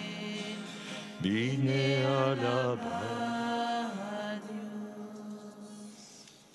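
A man's voice singing a slow, chant-like melody in long held notes, the last note fading out about four to five seconds in.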